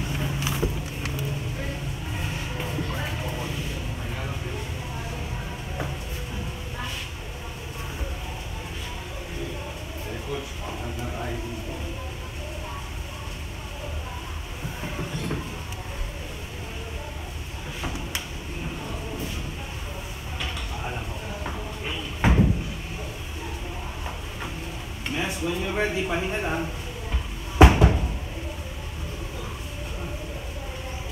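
Gym room sound: a steady low hum with faint voices and music under it, and two heavy thumps near the end, the second one the loudest.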